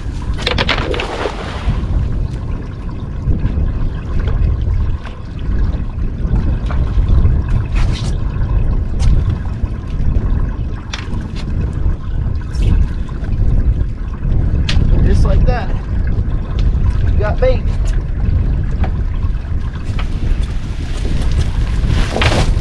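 Steady wind rumble on the microphone, with the splash of a cast net landing on the water about a second in. Scattered drips and rattles follow as the net is hauled back by its line, and water streams off the net as it comes aboard near the end.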